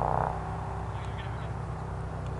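The tail of a drawn-out shouted call from someone on the field, fading out in the first moment. After it comes a steady low hum.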